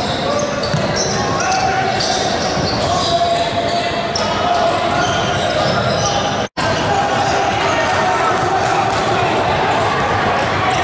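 Basketball game in a large gym hall: a basketball bouncing on the hardwood court amid an echoing hubbub of indistinct players' and spectators' voices. The sound drops out completely for an instant about two-thirds of the way through.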